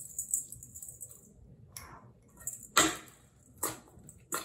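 Metal spoon clinking against a stainless steel mixing bowl as chopped vegetables are stirred: a few sharp separate clicks, the loudest a little before three seconds in. A soft high hiss in the first second.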